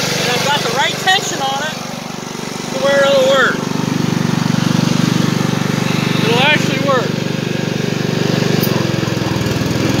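Riding lawn mower's engine running steadily as the mower is driven, growing louder about three and a half seconds in. The mower deck's belt is held tight by an added spring, which works well.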